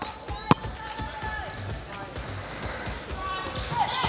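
A volleyball is spiked once with a sharp slap of hand on ball about half a second in, over background music and the chatter of a crowd in a gym.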